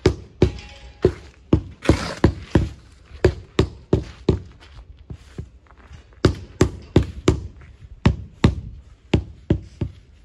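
Rubber mallet knocking a sawn sandstone paving flag down into its mortar bed, about two to three blows a second with a short pause midway. A shovel scrapes through mortar near the two-second mark.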